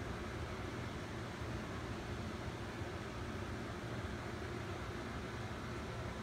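Steady room noise: an even hiss with a low hum beneath it and no distinct sounds.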